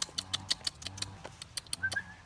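A quick, irregular run of sharp clicks and rattles, about a dozen in two seconds, over a low steady hum.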